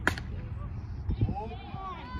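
A softball bat striking a soft-tossed softball hard: one sharp crack right at the start, with a brief ringing tail.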